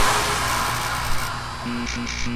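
Electronic TV-show intro sting music, with a whoosh at the start that then fades down.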